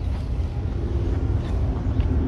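Steady low outdoor background rumble, with a faint steady hum coming in about halfway through.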